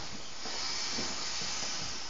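A person blowing one long, steady breath by mouth into the valve of an inflatable vinyl spaceship toy, heard as an airy hiss of air rushing through the valve.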